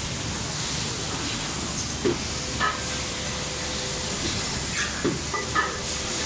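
LITAI TTF-700AF plastic box thermoforming machine running: a steady hiss of air, with a pair of short mechanical sounds about every three seconds as it works through its forming cycles.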